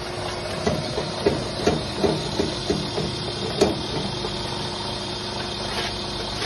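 Metal clanks and knocks from an interlocking block-making machine as its handles and lever are worked, about three a second for a few seconds, the loudest a little past halfway, over a steady machine hum.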